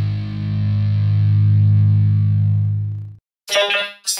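A distorted electric guitar chord held and ringing, ending in an abrupt cut-off about three seconds in. Near the end, a person's voice breaks in.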